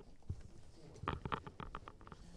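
Quiet hall with faint rustling and a quick run of soft clicks from about a second in.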